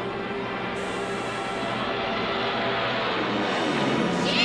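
Tense background music from the cartoon's score over a dense rushing noise, with a brief high hiss about a second in.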